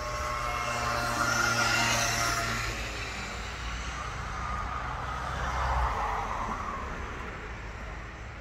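Road traffic: motor vehicles passing, swelling about one to two seconds in and again about six seconds in, over a steady low hum.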